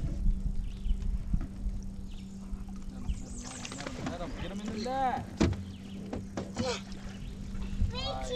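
Short wordless voice calls that rise and fall in pitch, around the middle and again near the end, over a steady low hum, with a few sharp knocks.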